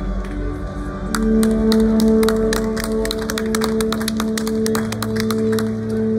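Live concert music played over an arena's sound system: a low sustained chord swells in about a second in, with many rapid, irregular sharp clicks over it.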